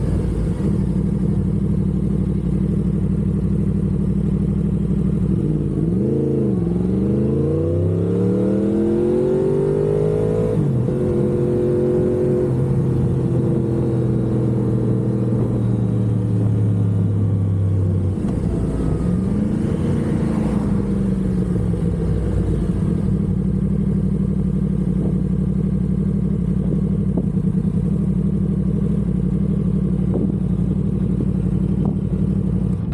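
2015 Yamaha R1's crossplane inline-four engine running as the bike is ridden. Its note swings down and then up again about six seconds in, changes again around twenty seconds in, then holds a steady pitch near the end.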